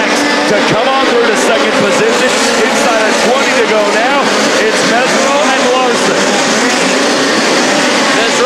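Several dirt-track midget race car engines running together, their pitch rising and falling over and over as the cars lift and power through the turns.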